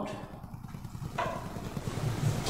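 Low, steady room rumble in a pause between spoken phrases, with a soft hiss setting in a little over a second in.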